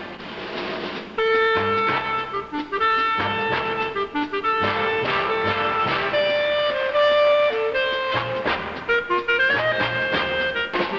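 Clarinet playing a swing melody in held notes over big-band accompaniment with a walking bass, entering about a second in after a brief quieter moment; a quick rising run of notes near the end.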